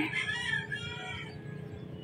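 A rooster crowing faintly, one call lasting about a second.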